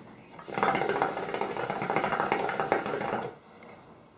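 Shisha water bowl bubbling steadily as smoke is drawn through the hose, for about three seconds, then stopping.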